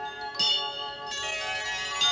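Bells ringing in a slow sequence of strikes about a second apart, one new strike about half a second in, each note ringing on into the next.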